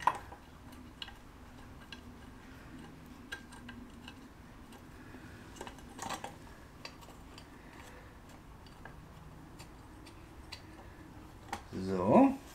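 Faint, scattered metallic clicks and clinks of bolts and a part being fitted by hand to a BMW M62 V8 engine block, with a slightly louder clink about six seconds in.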